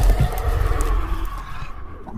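Sound-effect monster growl over a low, steady rumble, opening with a loud sudden hit.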